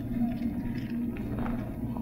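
Pause in an old sermon tape recording: low hum and room noise with a few faint rustles, as listeners turn their Bible pages.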